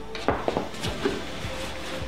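A few short knocks and rustles of a pair of sneakers and clothing being handled and handed over, the knocks coming in the first second.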